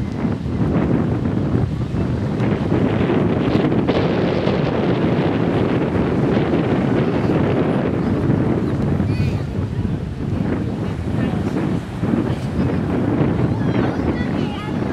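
Wind buffeting the microphone in a steady, fluctuating rumble, with small ocean waves breaking on the shore.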